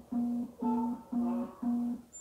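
Satellite finder meter beeping: a low steady tone pulsing about twice a second while the dish is being aimed at the satellite, with a brief higher tone over the beeps about a second in.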